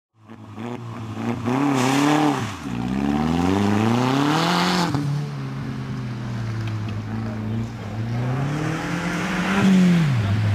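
Skoda Octavia estate's engine driven hard, the revs climbing and dropping again and again with gear changes and lifts: a sharp fall a little after two seconds in, another about halfway, a steadier stretch, then a climb and a fall near the end.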